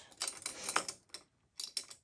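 Paintbrush handles clicking and rattling against each other as a half-inch brush is picked out of a bundle of brushes: a quick run of clicks in the first second, then a few more near the end.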